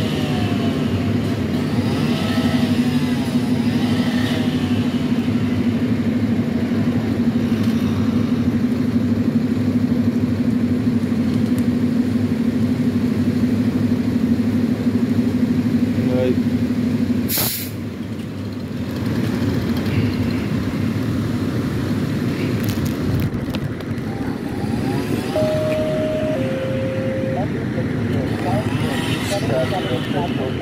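A large truck engine idling steadily, with a short loud hiss of air a little over halfway through as the low hum drops away.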